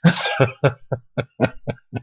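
A man laughing: a run of about nine short bursts of laughter in quick succession.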